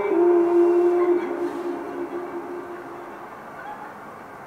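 A man's yodel call played over the hall's speakers: long held notes that step down in pitch about a second in and fade away over the next two seconds.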